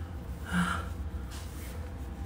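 A man's single short, breathy vocal sound, like a gasp, about half a second in, over a steady low hum.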